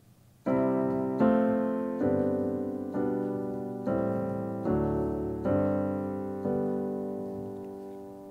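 Roland RD-2000 digital piano playing its downloadable RD-700GX "Expressive Grand" piano sound: a slow progression of eight sustained chords, about one a second, starting half a second in, with the last chord dying away near the end.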